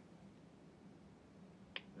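Near silence, with a single sharp click near the end: a key pressed on the EZ Access kiosk keypad.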